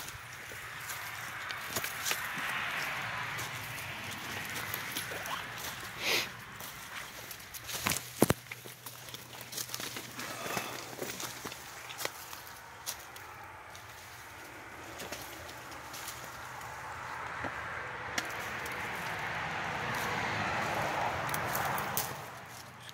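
Footsteps crunching and rustling through dry leaf litter and brush, swelling and fading as the walker moves, with a few sharp snaps about a third of the way in.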